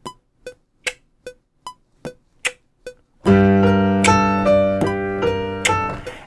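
Metronome clicking at 150 BPM, about two and a half clicks a second, every other click higher. About three seconds in, a piano comes in with a dark G-minor progression: a low held bass note under a repeating right-hand figure.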